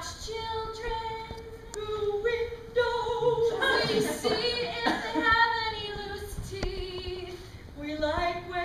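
A woman singing unaccompanied, holding long notes that step up and down in pitch.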